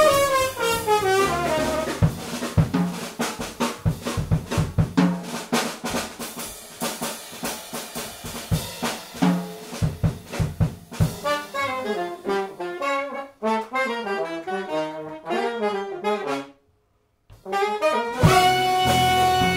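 Live small-group jazz: alto saxophone and trombone playing together over piano, upright bass and drum kit, with busy drum hits through the middle. The sound cuts out briefly near the end.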